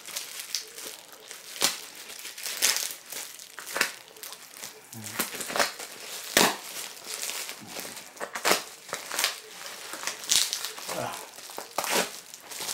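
A taped-up padded bubble mailer being handled and pulled open by hand: irregular crinkling and crackling of paper, tape and bubble wrap.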